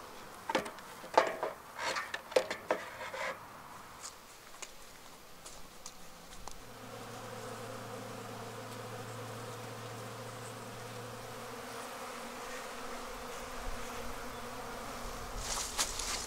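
A few light knocks and clicks in the first few seconds, then, from about halfway, a steady buzz of honeybees flying around a medium super of sugar-syrup frames set out for them to rob.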